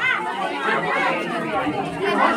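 Several people chattering at once, with some high-pitched voices among them.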